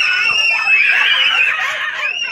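A young girl's high-pitched playful screaming: one long scream held, then a second starting about a second in and fading out halfway through the second second.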